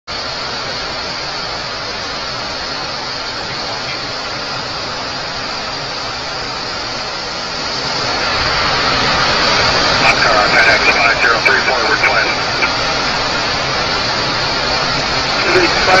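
Steady rushing hiss of air and engine noise inside a jet aircraft flying at cruise altitude, growing louder about halfway through. A few seconds of muffled radio voice come in partway through and again near the end.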